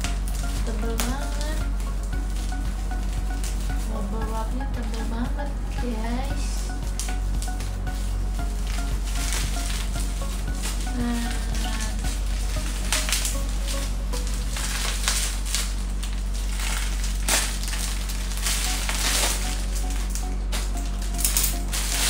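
Plastic packaging crinkling and rustling in bursts as a plastic mailer bag is cut open and a plastic-wrapped garment is pulled out and handled, growing busier in the second half, over steady background music.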